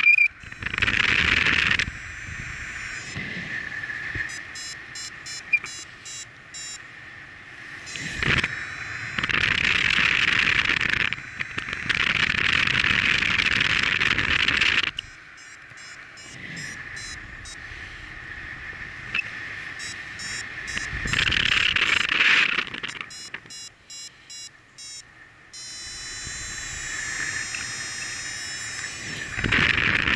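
Wind rushing over the microphone in flight under a paraglider, swelling into loud gusts every few seconds. Between the gusts, a variometer gives quick runs of high beeps, its signal that the glider is climbing in lift.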